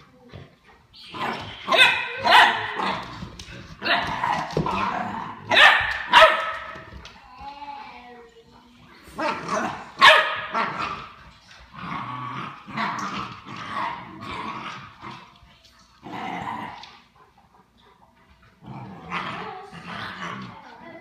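A puppy and an older dog play-fighting, with repeated short barks and yips, loudest through the first half. The barking thins out about three-quarters of the way through and picks up again near the end.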